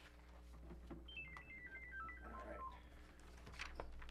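A cell phone playing its power-off tune as it is switched off: a quick, faint run of about a dozen short electronic notes stepping down in pitch, starting about a second in and lasting under two seconds.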